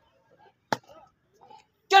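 A single sharp stamp of a drill boot on concrete about three quarters of a second in, with a few faint footfalls around it.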